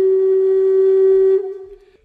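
Solo melody on a flute-like wind instrument: one long low note held, then fading away about a second and a half in, at the end of a phrase.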